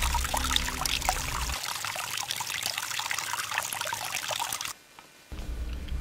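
A thin stream of rainwater running from a jerrycan's tap into a cloth filter stretched over a container, trickling steadily as dirty water is strained. It cuts off suddenly near the end.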